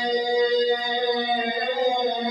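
A man singing a Hanukkah song in long held, chant-like notes into a mosque's microphone, amplified through its sound system.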